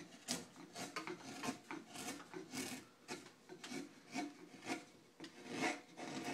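Hand carving gouge pushed through a block of light gelutong wood in short slicing strokes, about two a second, each a brief scraping shave of the grain.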